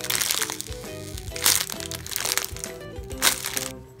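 Thin clear plastic packaging crinkling and crackling in sharp bursts as a squishy sealed in its bag is squeezed and handled, over background music with a steady melody.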